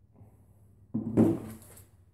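A white Teflon ring set down on a metal workbench about a second in: one sudden clunk that dies away within a second.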